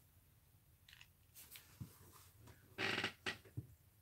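Faint rustles and scrapes of hands handling a carved rubber eraser stamp against a paper page, with a few louder scuffs about three seconds in.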